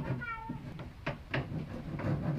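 A short pitched cry falling in pitch, like a cat's meow, just after the start. About a second in come two sharp knocks from hand work on the wooden planks of a boat hull.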